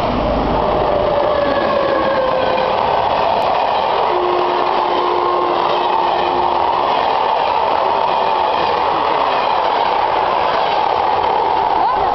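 Passenger train passing close by: a steady, loud rush of wheels on rails, with a faint held tone over it for a few seconds in the middle.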